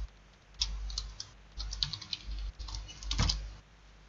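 Keystrokes on a computer keyboard: several short runs of key clicks over about three seconds, the loudest a heavier clack a little past three seconds in.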